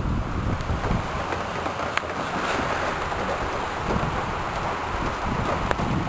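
Steady wind noise, wind blowing across the microphone, with a small click about two seconds in.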